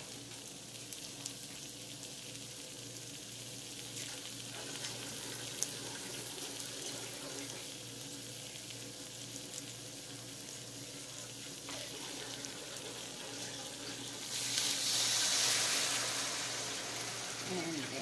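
Pork sausage patties sizzling steadily in a frying pan. From about three-quarters of the way in, a louder rush of hiss lasts two or three seconds as a little water is added to the hot pan to steam the sausages through.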